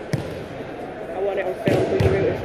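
Bodies landing on padded competition mats in breakfalls from aikido throws: a light thud just after the start and a heavier thud near the end.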